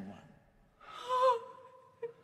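A person's sharp, shocked gasp about a second in: a short breathy intake with a little voice in it. A faint held note lingers after it.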